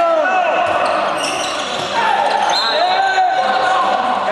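Indoor handball game sounds: sneakers squeaking on the sports-hall court floor over players' calls. The squeaks come as short rising and falling squeals, with a longer held one in the second half.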